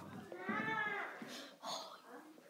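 A faint, high, drawn-out call that rises and then falls in pitch for under a second, followed by a shorter one near the end. It is either a cat's meow or a child's voice.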